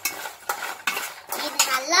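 A spoon clinking and scraping against a stainless steel bowl as fried cashew nuts are stirred and tossed, a run of sharp irregular clicks.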